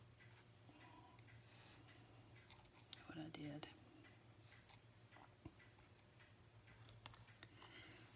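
Near silence: faint clicks and light paper handling as small foam adhesive dimensionals are peeled and pressed onto a paper die-cut. There is a brief soft murmur about three seconds in.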